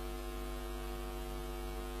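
Steady electrical mains hum: an even, unchanging buzz made of many stacked overtones, at a low level.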